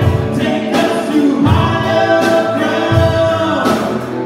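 A live worship band playing a song: several voices singing together over acoustic and electric guitar and a drum kit, with a steady low beat about every second and a half.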